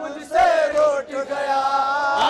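A man chanting a noha, a Shia Muharram lament, into a microphone in short melodic phrases with brief breaks between them.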